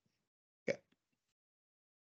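Near silence, broken once, under a second in, by a single brief soft sound.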